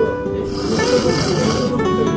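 A person slurping thick ramen noodles from a bowl: one long, hissing slurp from about half a second in until shortly before the end, over flamenco-style acoustic guitar background music.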